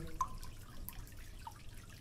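Water dripping in a bathroom: a few light drips over a faint steady water hiss.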